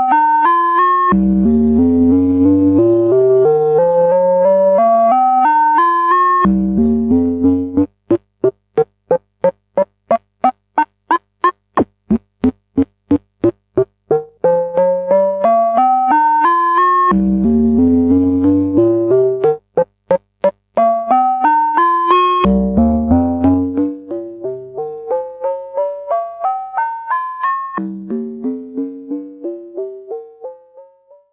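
Tesseract Modular Radioactive Eurorack digital oscillator voice, raw with no effects, playing repeated rising scales of single notes under a gated envelope. As the release control is turned, the notes change from held to short clipped plucks for several seconds about eight seconds in, then lengthen again, and become shorter and fainter near the end.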